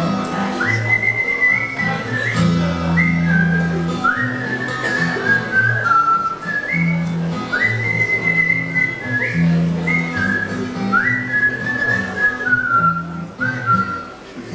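A man whistling a melody into a microphone, each phrase swooping up into a high note and stepping back down, over twelve-string acoustic guitar accompaniment with low bass notes.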